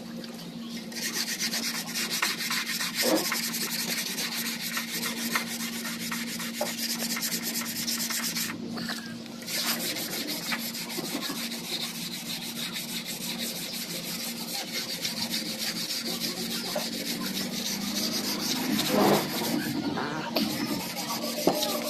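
Sandpaper rubbed by hand in quick back-and-forth strokes over the painted steel of an old almirah door, scuffing the old paint before repainting. The sanding starts about a second in and pauses briefly near the middle.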